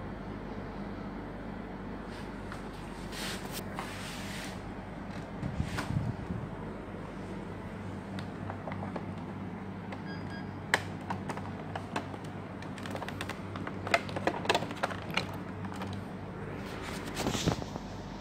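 Dell desktop computer powered on and running with its case open: a steady low hum from its fans and power supply, with scattered clicks and knocks of handling.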